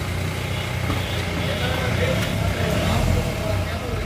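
Mahindra Bolero's diesel engine idling with a steady low rumble, with people talking in the background.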